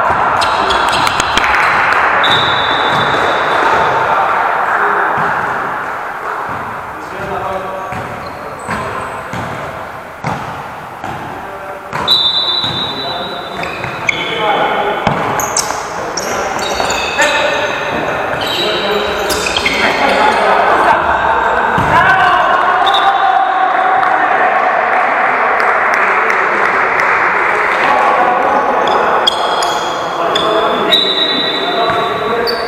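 Indoor football game in a large, echoing sports hall: players calling and shouting, the ball being kicked and bouncing on the court floor with sharp thuds, and occasional high squeaks of shoes on the synthetic floor.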